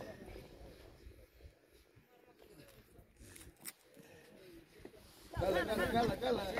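Faint outdoor quiet with a few soft clicks, then people's voices start up loudly near the end.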